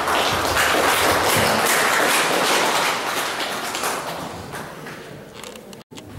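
Audience applauding, a dense spatter of hand claps that is loudest for the first three seconds and then dies away. The sound cuts out for an instant near the end.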